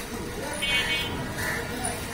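Street noise: a vehicle horn toots briefly about half a second in, over background voices and traffic.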